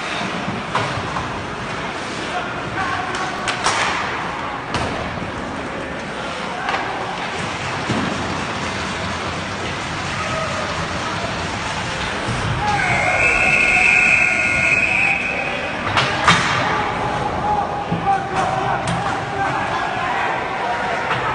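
Ice hockey game sound in an arena: crowd chatter and the scrape and clatter of play, with sharp knocks as players and the puck hit the boards and glass. About two-thirds of the way through, a sustained high tone sounds for about two seconds.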